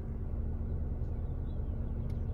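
Steady low rumble with a faint constant hum inside a car cabin, as from the car's engine idling while parked.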